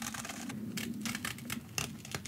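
Scissors snipping through sticker paper in a series of short, quick cuts, working around the edge of a small label.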